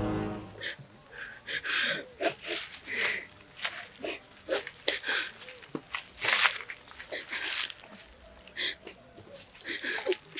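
Outdoor rural ambience: scattered short animal sounds, with a high-pitched pulsing trill that stops and starts several times.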